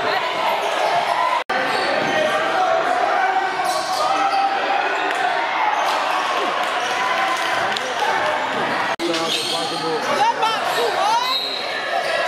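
Live sound of an indoor college basketball game: the ball bouncing on the hardwood court amid the voices of players and spectators, echoing in the gym. The sound drops out briefly twice, about a second and a half in and again about nine seconds in.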